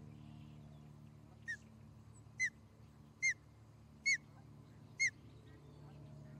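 An osprey calling: five short, sharp whistled notes, each dipping in pitch, given about one a second, the first one fainter than the rest.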